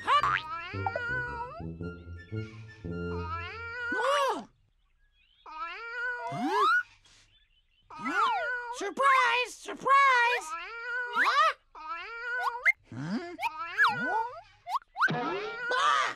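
Cartoon character voice sounds: high-pitched squeaky chirps and babble with swooping, rising and falling pitch, in short bursts with brief pauses between them. Light background music plays under them and stops about four seconds in.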